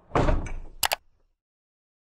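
Logo animation sound effect: a whoosh lasting about half a second, then two sharp clicks in quick succession.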